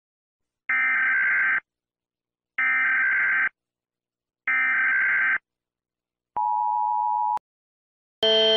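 United States Emergency Alert System alert tones: three evenly spaced one-second bursts of the SAME digital header data, then about a second of the steady two-tone attention signal, which cuts off with a click.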